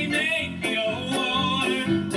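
A musical theatre song: voices singing with vibrato over band accompaniment with a steady beat.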